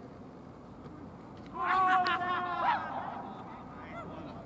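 Cricket players yelling a loud appeal right after a delivery: a high shout held for about a second, then breaking off.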